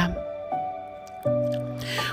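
Soft instrumental background music of long held notes, with a new, louder chord coming in a little past halfway.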